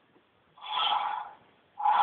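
A short, breathy snort of laughter through the nose, starting about half a second in and lasting under a second, with no voice in it.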